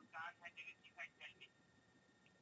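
Faint, thin voice of the person on the other end of the line leaking from a cordless phone's earpiece, stopping about a second and a half in.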